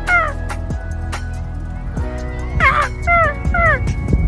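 Gulls calling: short cries that fall in pitch, one at the start and three in quick succession about half a second apart near the end.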